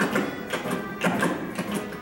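Tap dancing: a quick run of sharp taps over instrumental show music.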